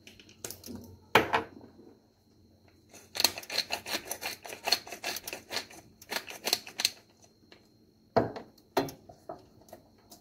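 Hand spice mill twisted over a saucepan: rapid clicking grinding in two spells, from about three seconds in to about seven. A sharp knock about a second in and two more near the end.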